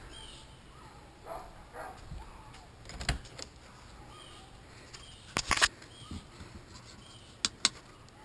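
Sharp clicks and knocks from a camper's wooden side door being unlatched, opened and handled: one about three seconds in, a louder pair a little past halfway, and two quick clicks near the end. Faint bird chirps in the background.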